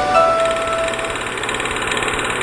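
Electronic channel-ident music: a few bright chime-like notes in the first second over a steady, buzzing synthesizer drone.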